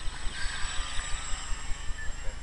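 Faint buzz of a radio-controlled model autogiro flying overhead, under a low rumble that pulses about five times a second.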